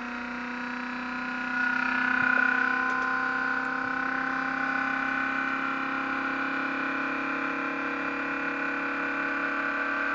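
Muller-type magnet motor running under its pulsed driver coils, a steady hum made of several fixed tones. About a second and a half in it grows louder as the input voltage to the driver coils is raised, then settles and holds steady.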